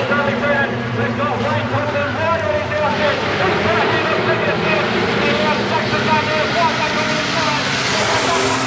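Several speedway sedan engines run together as the pack races around a dirt oval, their overlapping pitches rising and falling as the drivers get on and off the throttle.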